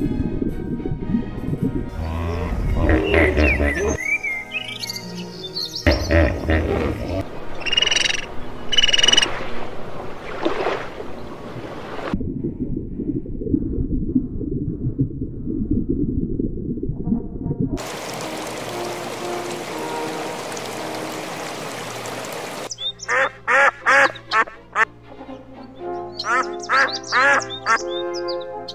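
A changing patchwork of sound clips over background music. In the last five seconds a duck quacks in quick, repeated series.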